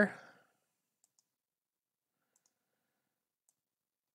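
Near silence with a few faint, short clicks from working at a computer.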